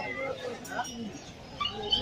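A puppy whimpering, with people's voices chattering in the background.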